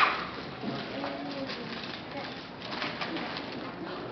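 Faint murmur of children's voices, with small knocks and rustling of movement.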